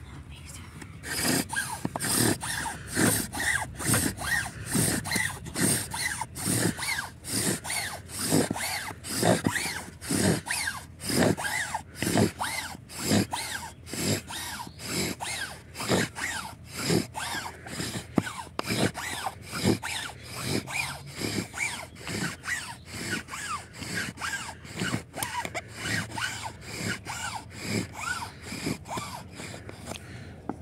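Wooden spindle of a spring-pole sapling bow drill turning back and forth in a wooden hearth board: a rhythmic squeaking grind, about two strokes a second, as the cord is pulled and the sapling springs it back, grinding out black char dust for a friction-fire ember. It stops near the end.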